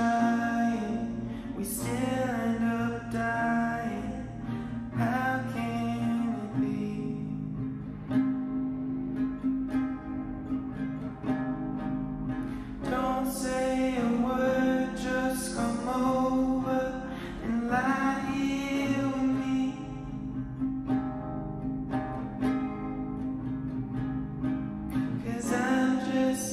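A man singing a slow melody over his own nylon-string classical guitar, with sung phrases broken by stretches where the guitar carries on alone.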